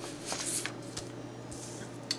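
Soft rustling of paper sheets being handled, loudest in the first second, with a few light clicks.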